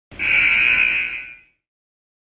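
A buzzer sound effect: one buzz lasting about a second and a half, fading out at the end.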